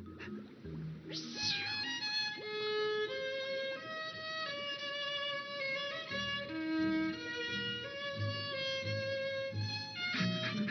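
Violin playing a melody of long held notes over a low accompaniment, with a quick downward swoop about a second in.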